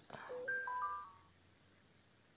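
A short electronic notification chime: four quick notes entering one after another and overlapping, fading out after about a second.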